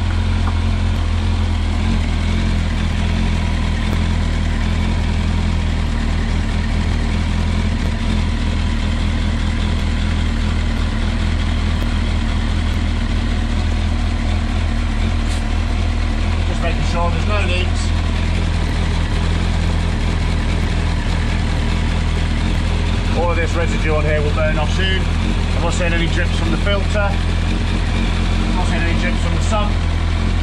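Kawasaki ZX-10R inline-four engine idling steadily on fresh oil, run after a clutch change to check for leaks.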